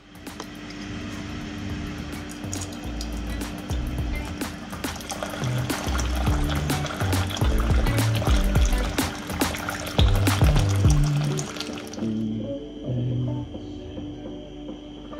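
Plain water pouring from a water dispenser into a ceramic mug, a steady rush that stops suddenly about two seconds before the end, over background music.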